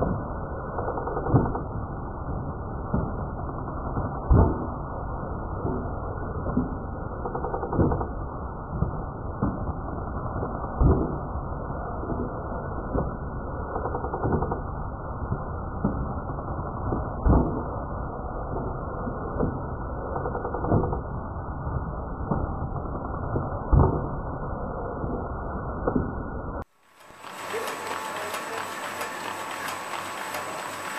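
Folder gluer running: a steady, muffled mechanical clatter with a sharper knock every three seconds or so. Near the end the sound cuts off and gives way to a brighter steady machine hum with a thin high whine.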